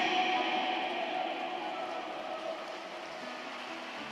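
Faint background music of soft, sustained held notes over a light hiss of room noise, fading down over the first couple of seconds; a lower note comes in near the end.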